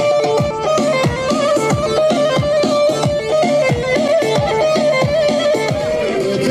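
Loud amplified Kurdish folk dance music from a live wedding band: an ornamented lead melody over a steady, quick drum beat.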